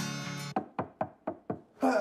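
Background music cuts off, then six quick knocks on a wooden door at about four a second, and a voice comes in right at the end.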